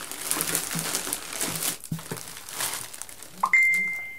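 Plastic packaging crinkling and rustling as hands dig through bagged items in a cardboard box. Near the end a sudden single high-pitched tone starts and fades away.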